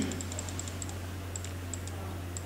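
Light, quick clicks at a laptop while clicking through presentation slides: a rapid cluster in the first half-second and a few scattered ones later, over a steady low electrical hum.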